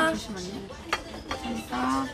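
A woman's voice making a short, held low hum or 'mm' sound near the end, with one sharp click about a second in and soft murmuring before it.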